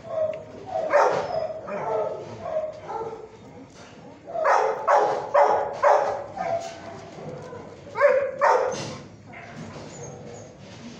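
A dog barking in short, sharp barks mixed with higher yips and whines. There is one bark near the start, a quick run of four about halfway through, and two more near the end.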